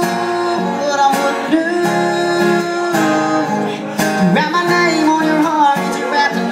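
Acoustic guitar strummed steadily, with a man singing long held notes over it.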